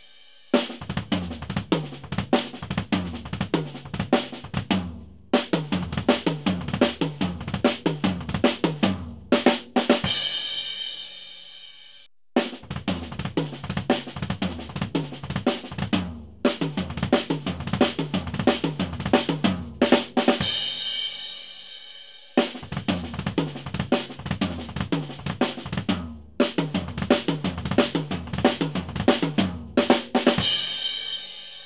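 Drum kit played with a double bass drum pedal: fast triplet runs in which groups of three quick bass drum notes fall between snare and tom strokes. It is played through three times, each pass ending on a cymbal left to ring.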